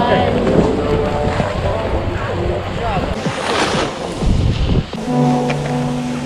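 Wind on a GoPro's microphone and skis sliding over packed snow, with a few voices at first. Background music with held notes comes in about five seconds in.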